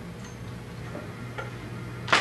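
Steady low electrical hum and hiss with three faint clicks, from buttons being pressed on a synthesizer's front panel as a sound is set up.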